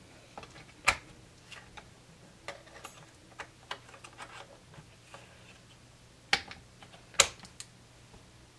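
Small sharp clicks and taps of DDR3 SO-DIMM memory modules being pushed into a laptop's memory slots and snapping into the slot clips. The loudest clicks come about a second in and twice near the end, with lighter ticks of handling between them.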